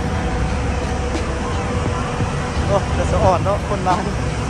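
Busy city road traffic heard from above: a steady low rumble of car and taxi engines and tyres. A voice is heard briefly near the end.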